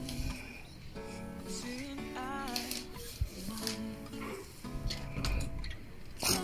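Background music: a song with a wavering melody line over held chords.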